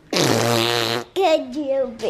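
Comic fart sound effect: one loud, buzzy, low blast lasting just under a second, followed by short voice-like sounds.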